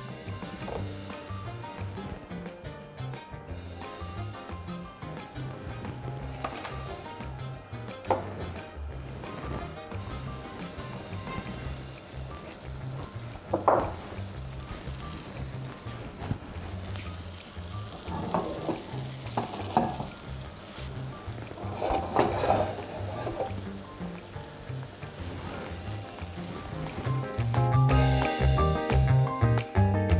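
Background music, with butter sizzling as it melts in a frying pan.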